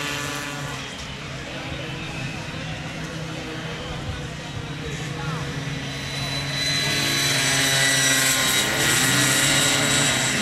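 Small racing motorcycles running at high revs, a steady buzzing drone from several engines. It grows louder from about seven seconds in as the bikes come closer, with the pitch rising as they accelerate.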